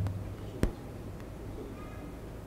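A pause in speech into a handheld microphone: a steady low hum with one sharp click about half a second in and a faint, short, high-pitched call near the end.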